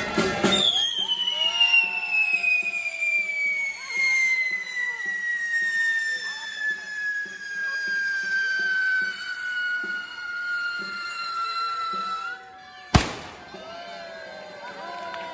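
Firework on the parade dragon burning with a long whistle that falls steadily in pitch for about twelve seconds over light crackle, then a single sharp bang near the end. Faint regular drumbeats sound underneath.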